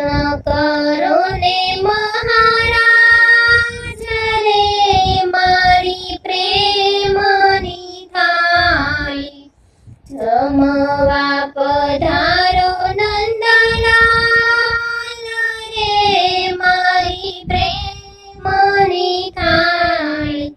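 A high voice singing a Gujarati Krishna thal, the devotional song offering food to Krishna, in long melodic phrases that break off briefly about halfway through.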